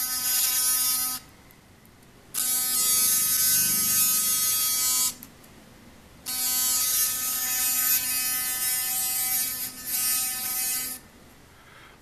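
Philips Sonicare electric toothbrush's magnetic oscillator drive running bare out of its handle: a steady buzz that cuts out twice for about a second and stops about a second before the end.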